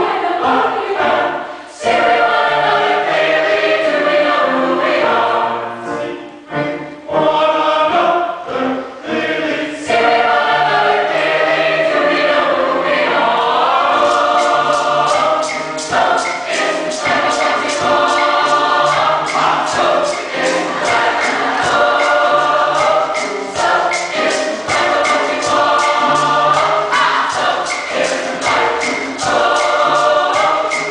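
Mixed choir singing in full voice. About halfway through, a steady beat of sharp strokes, two or three a second, joins the singing.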